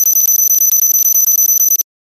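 A loud, shrill electronic tone with a fast buzz beneath it, held steady for just under two seconds and cut off suddenly.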